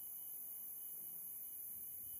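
Faint steady hiss with a low hum and no distinct event: the background noise of the microphone and sound feed during a pause between spoken phrases.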